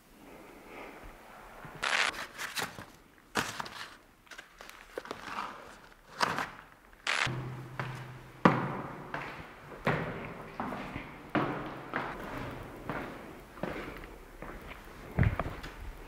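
Footsteps climbing a stone staircase: a run of shoe knocks and scuffs on the steps, roughly one a second, with a few louder thuds.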